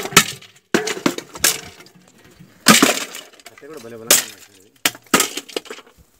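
Sticks smashing the metal pots and drums of an illicit liquor still: a series of sharp, irregular crashing blows, the loudest about three seconds in.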